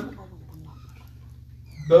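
A man's voice trails off at the start, followed by a pause of about a second and a half with only a steady low hum. He starts speaking again near the end.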